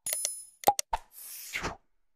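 Animated subscribe-button sound effects: a series of sharp mouse clicks, with a short, high bell ding over the first half second as the notification bell is clicked. The loudest click-pop comes about two-thirds of a second in, followed by a brief swoosh of noise.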